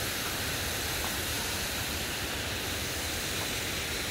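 Steady rushing of running water, an even hiss that holds level throughout.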